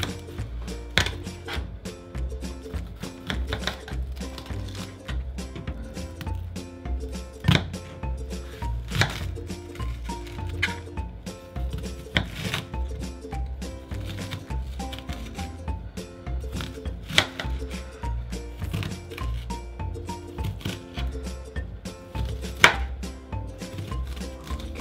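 Kitchen knife cutting a red onion on a plastic cutting board: irregular knocks of the blade on the board, a few sharper than the rest, over background music.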